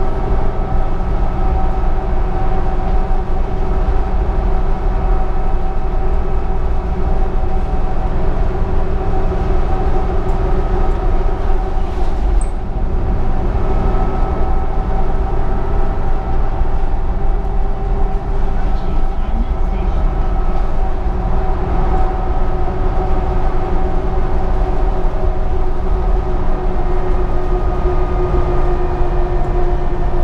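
Interior sound of a New Flyer D60LFR articulated diesel bus under way, heard from inside the passenger cabin: a loud, steady drone with a few held humming tones from the engine and drivetrain.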